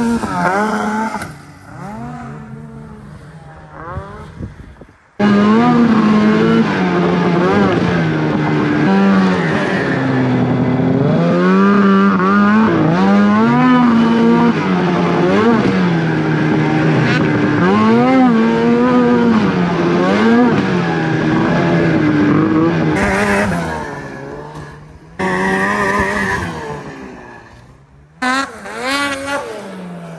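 Two-stroke snowmobile engines revving and rising and falling in pitch with the throttle, in several clips joined by sudden cuts. The loudest stretch, from about 5 s to 23 s, is one sled's engine being run hard up and down the rev range.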